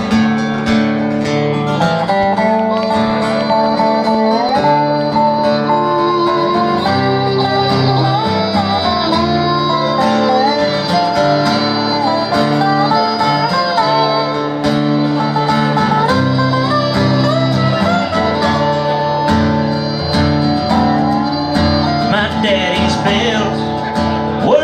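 Live country band playing an instrumental intro: strummed acoustic guitar, fiddle and lap steel guitar over drums, with a melody line of sliding notes.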